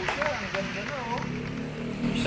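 Mostly a man's voice speaking, with a low steady hum starting about midway.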